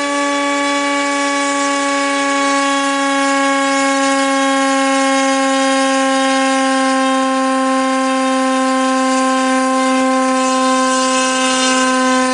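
A 2350 Kv brushless electric motor spinning a 5x3 propeller on a Depron flying-wing model, running at a steady high speed: a constant, siren-like whine with many overtones.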